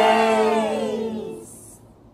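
The last note of a children's counting song, held with a falling slide and fading out over about a second and a half.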